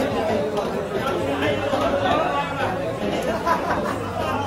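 Steady chatter of several people talking over one another in a busy market, with faint scrapes and taps of a large knife scaling a big rohu on a wooden block.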